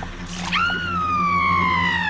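A woman's high-pitched scream: one long cry that starts abruptly about half a second in and slowly sinks in pitch, over a low steady music drone.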